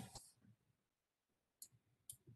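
Near silence in a pause in speech, broken by a single faint, short click about one and a half seconds in.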